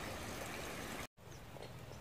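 Faint, steady background hiss of outdoor ambience. About a second in it drops out to dead silence for an instant at an edit, then carries on a little quieter.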